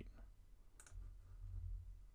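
A single computer mouse click about a second in, over a faint low hum.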